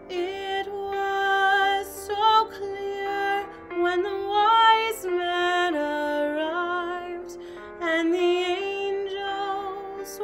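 A woman singing solo, holding notes with vibrato, over a sustained keyboard accompaniment; her voice comes in right at the start over the already-playing keyboard.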